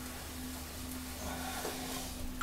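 Electric potter's wheel running with a steady low hum while wet hands rest on the spinning lump of clay.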